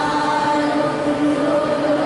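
A group of voices singing in unison, holding long sustained notes.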